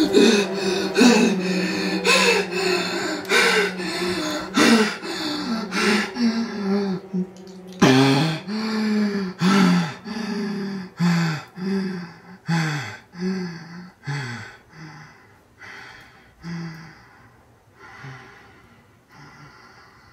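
A man gasping for breath, his voice catching on each gasp, about two a second at first, then slowing and growing fainter until they fade away near the end.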